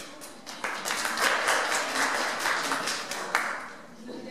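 Audience applauding. The clapping starts about half a second in and dies away near the end.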